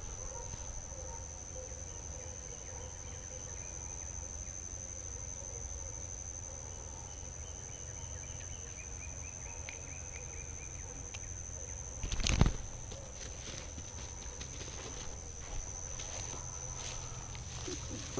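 Insects droning at one steady, high pitch, with a single loud thump about twelve seconds in.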